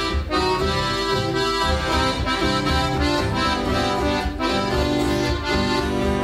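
Piano accordion playing a sustained melody over a rhythmically played acoustic guitar, an instrumental break in a live country song.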